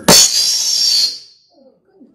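A sharp pop on the microphone followed by a loud rush of breath-like hiss lasting about a second, then fading away: a forceful exhale straight into a handheld microphone.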